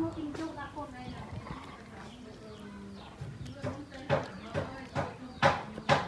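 Quiet speech from a person's voice, with a few sharp clicks or taps, about four seconds in and twice more near the end.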